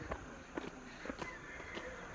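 Footsteps walking on a concrete street, about two steps a second.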